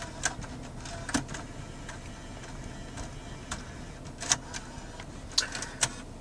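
Mercedes Comand in-dash six-disc CD changer working after slot one is selected for loading: a faint run of irregular mechanical clicks and ticks over a low steady hum.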